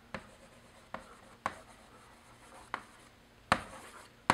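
Chalk writing on a chalkboard: a handful of sharp, irregularly spaced taps as the chalk strikes the board, with faint scratching strokes between them.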